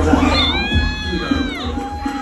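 Dance music with a steady bass line, over which a high voice holds one long note that bends down near the end, followed by a shorter, lower held note.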